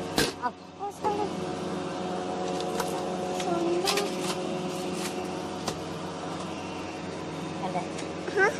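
Steady multi-tone hum of a shop's refrigerated display cases, with a few sharp handling clicks and brief faint voice sounds.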